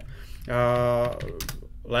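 A man's drawn-out hesitation sound, held at one pitch, followed near the end by a few quick computer keyboard keystrokes as a stock ticker is typed into charting software.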